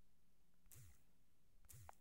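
Near silence, with two faint brief clicks: one just under a second in and one near the end.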